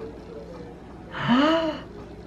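A man's short gasping exclamation, a breathy voiced 'ooh' whose pitch rises and then falls, about a second in.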